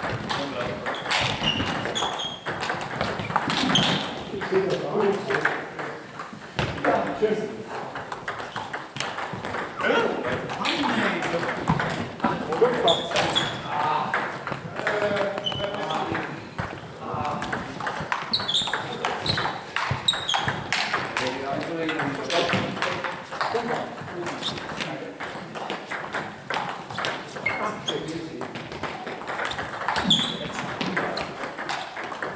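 Table tennis rallies: the ball clicking off the paddles and the table in quick back-and-forth strokes, with pauses between points. Indistinct voices run underneath.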